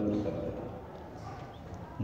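A man's voice trails off at the start, then a pause of quiet room tone with a few faint clicks about a second in.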